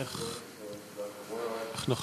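Speech only: a man's voice speaking at a moderate level, with a louder voice starting right at the end.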